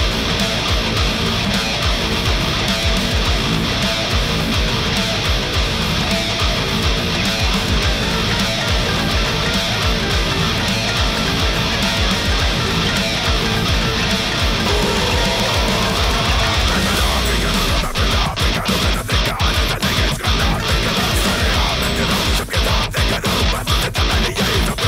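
Heavy metal music led by a distorted seven-string electric guitar (ESP LTD EC-407) played through a Kemper profiling amp. About three-quarters of the way through, the riff turns stop-start, with short hits and gaps.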